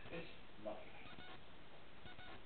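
Two brief, faint wordless vocal sounds from a person, one right at the start and one about two-thirds of a second in, over low room tone.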